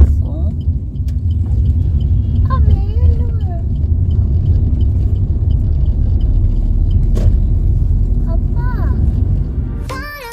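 Steady low road rumble of a Maruti Suzuki Ciaz driving at speed, tyres and engine heard from inside the cabin. A single knock comes about seven seconds in.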